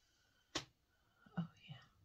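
A sharp click about half a second in, then a few soft whispered vocal sounds from a woman close to the microphone.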